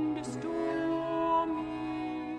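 A soprano and a bass viol performing a slow psalm tune in long held notes, the melody stepping between pitches over the viol's sustained low notes.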